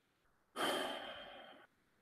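A man's sigh, a breath let out close to the microphone, about a second long and fading as it goes.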